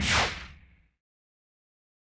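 A whoosh transition sound effect that sweeps down in pitch and fades out within about half a second, followed by dead silence.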